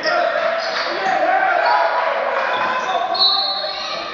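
Basketball being dribbled on a hardwood gym floor, under steady overlapping chatter from spectators in the stands.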